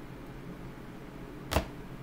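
A single sharp slap of a tarot card deck being handled, about one and a half seconds in.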